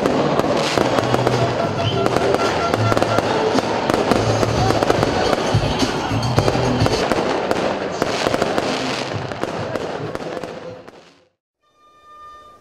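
Aerial fireworks bursting, a dense run of crackling pops and sharp reports that fades out about eleven seconds in.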